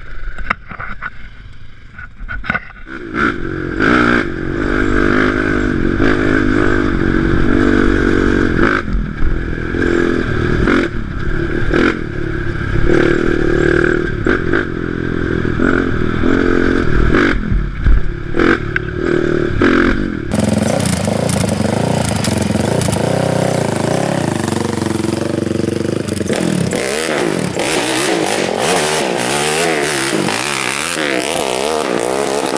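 Sport ATV engines revving hard under acceleration while riding on dirt, heard from a camera on a moving quad with a deep rumble underneath. About twenty seconds in, the sound cuts to a quad heard from beside the track, its revs rising and falling.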